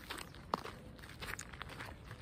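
Faint footsteps of a person walking, a few soft irregular steps with one sharper click about a quarter of the way in.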